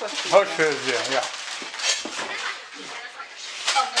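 Voices in a small room, an adult and a small child, with short clicks and clatter from a plastic toy stove being handled.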